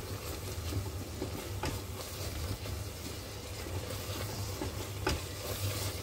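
Tomato and spice masala frying with a steady sizzle in a stainless steel pot while a silicone spatula stirs and scrapes it, a couple of scrapes standing out, over a steady low hum.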